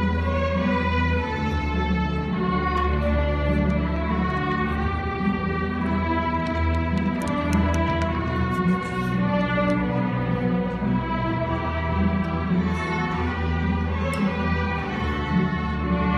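Student orchestra with violins and cellos playing, held notes moving and overlapping at a steady level, with a few faint clicks over the top.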